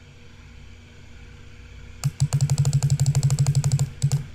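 A computer mouse making a fast, even run of clicks, about a dozen a second, that starts halfway through and lasts about two seconds, over a faint steady hum. The clicks come as a Soft Edges size value is stepped up.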